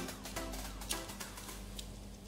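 Upbeat dance-electronic background music playing quietly.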